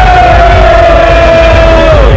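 A man's voice holding one long loud call that sinks slightly in pitch and breaks off near the end, over music with a steady heavy bass.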